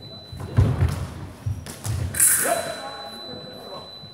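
Sabre fencers' fast footwork and lunge thudding on the piste in a large hall. About two seconds in comes a sharp high clash and a short shout. The scoring machine's steady high tone then sounds, marking the touch.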